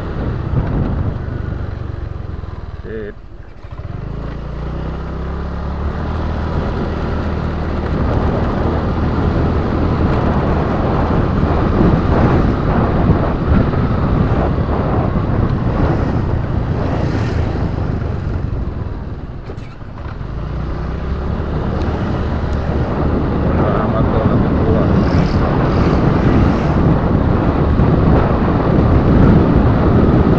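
Wind rushing over an action camera's microphone on a moving vehicle, mixed with engine and road noise. The rush eases twice, about three seconds in and again near twenty seconds, letting a steady low engine hum come through before the wind builds back up.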